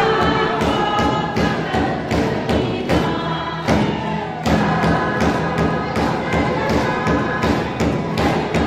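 Congregational worship singing led by women on microphones, with many voices together, over a steady beat of hand-claps and drums.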